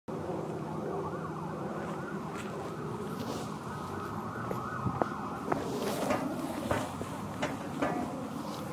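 A siren wailing, its pitch rising and falling continuously, with scattered sharp clicks from about five seconds in.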